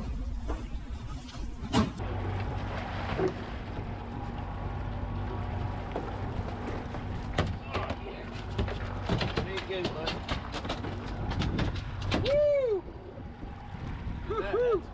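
Outboard engine running steadily at low trolling speed. Over it, a freshly gaffed yellowfin tuna thrashes on the fibreglass deck: scattered knocks, then a quick run of them in the middle. Near the end there is a short wordless shout.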